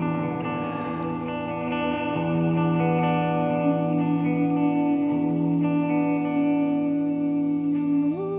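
Semi-hollow electric guitar played fingerstyle: a slow instrumental passage of held notes that ring on and overlap, changing every second or two, with reverb.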